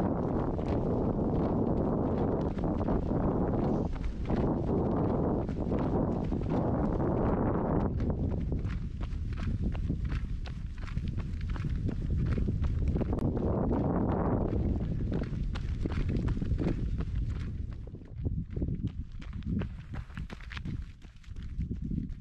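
Running footsteps on an asphalt road, a quick, steady patter of footfalls under a heavy rumble of wind buffeting the microphone. About three-quarters of the way through the wind eases and the footfalls stand out more clearly.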